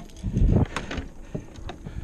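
Scattered knocks and clicks of handling in an aluminum fishing boat, with a low rumble about half a second in.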